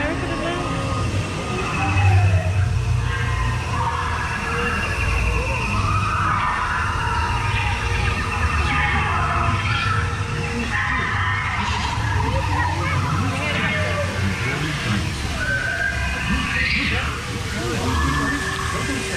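Steady low rumble of a theme-park river-ride boat moving through its water channel, a little louder about two seconds in, with voices over it.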